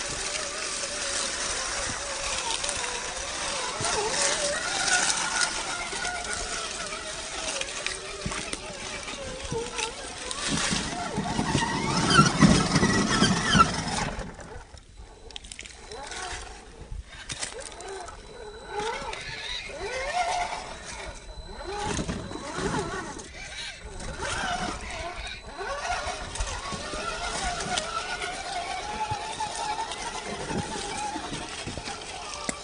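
RC rock crawler's brushed electric motor and gears whining, the pitch rising and falling with the throttle, with tyres crunching over dry leaves and rock. A louder stretch comes about twelve seconds in, then it drops quieter with scattered clicks as the truck crawls over a boulder.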